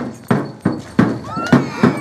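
Percussion beating a steady rhythm of about three strokes a second, with children shouting and squealing over it.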